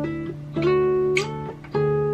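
Acoustic guitar fingerpicking the intro melody over a ringing D bass note: single notes struck and left to ring, a new one about half a second in and another near the end, with a short finger squeak on the strings just past a second in.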